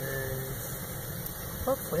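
Maple sap at a full boil in a steaming stainless steel evaporator pan, a steady rushing noise.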